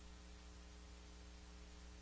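Near silence: a faint, steady electrical hum with hiss.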